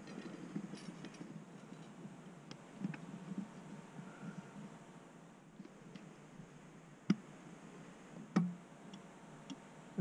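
Faint handling noise and light metallic ticks as feeler gauge blades are worked between the cam lobe and the rocker arm of the engine's intake valve to check the valve clearance, with two sharper clicks in the second half.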